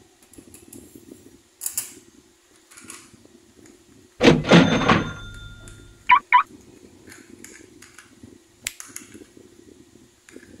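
Handling noise from a plastic toy train engine and plastic track: scattered light clicks and rustles, a louder clattering burst about four seconds in, and two sharp clicks just after six seconds.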